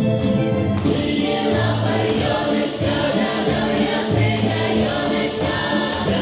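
Slavic folk song performed live: a group of voices singing together over instrumental accompaniment, with a steady percussive beat.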